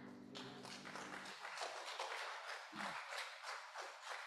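Congregation clapping: a dense, irregular patter of hand claps, while the piano's last chord fades out in the first second or so. A low thump sounds about three seconds in.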